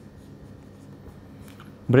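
Whiteboard marker writing on a whiteboard: faint strokes of the tip across the board as letters are drawn.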